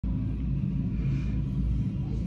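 Reef aquarium's pumps and water circulation running: a steady low hum and rumble with a faint hiss.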